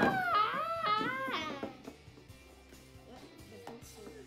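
A child's high-pitched play cries, sliding up and down in pitch, for about the first second and a half, over quiet background music that carries on alone afterwards.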